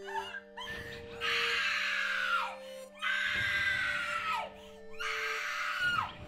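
A woman screaming three times, each scream long and loud and dropping in pitch as it breaks off, over a few steady held musical tones.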